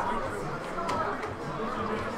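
Chatter of several people talking at once, voices overlapping, with one sharp click about a second in.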